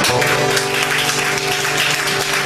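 Applause: many quick hand claps, with the song's final chord still sounding steadily underneath.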